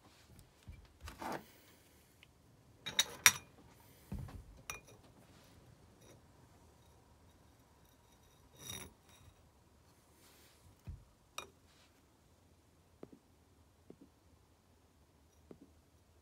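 Scattered clicks, scrapes and knocks of pliers and metal motor parts being handled on a workbench, with a sharp metallic clack about three seconds in as the loudest sound.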